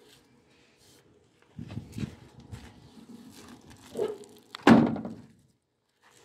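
Door of a 1965 Chevrolet Impala two-door being shut with one loud thunk near the end, after a few seconds of shuffling and light knocks as someone climbs out of the car.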